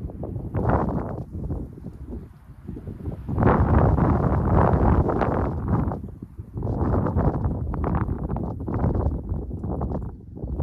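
Wind buffeting the microphone in uneven gusts, a low rumbling rush that swells strongest from about three to six seconds in.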